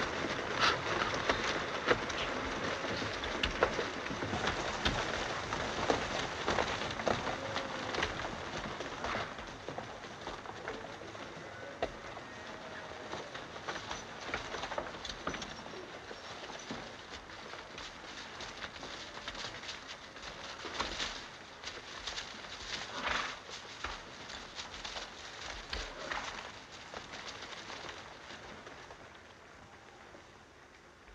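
A group of horses moving slowly through brush and undergrowth: a dense rustle with many small hoof clicks and knocks. It gradually fades and is faintest near the end.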